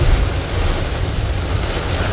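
Heavy rain on a car's windshield and roof, heard from inside the cabin, over the steady low rumble of the car moving on a wet road.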